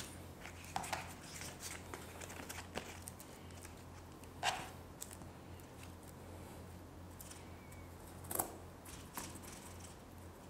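Faint rustling and a few soft clicks of artificial flower leaves and thread being handled at the stems of a bouquet as it is bound, over a low steady hum.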